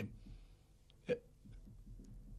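A lull with faint room hum, broken about a second in by one short, quiet vocal sound from a man, a brief 'hm'-like catch of the voice.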